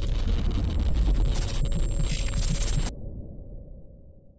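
Glitch sound effect for a logo animation: a deep low swell with harsh crackling static over it. The static cuts off suddenly about three seconds in, and the low sound then fades away.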